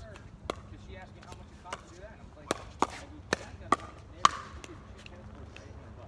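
Pickleball rally: sharp pops of paddles hitting the plastic ball, a couple of single hits early on, then a quick exchange of five hits from about two and a half to four and a half seconds in, the last one the loudest, with a short ring.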